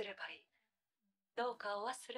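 Anime character dialogue in Japanese: a line of speech that stops about half a second in, and after a second's pause a new line begins.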